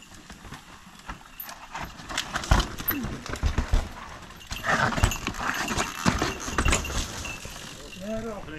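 Mountain bikes rolling down a rock slab: a run of scattered clicks and rattles from tyres, chain and frame on the rock, with three heavier thumps as the wheels drop over ledges.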